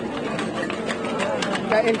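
Marching protest crowd talking, with scattered sharp metallic clanks of pots and pans being banged in a cacerolazo.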